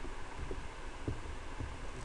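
Steady low hum from the recording microphone, with a few soft, low thumps from typing on a computer keyboard.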